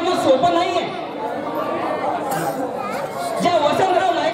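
A man's speech delivered through a microphone.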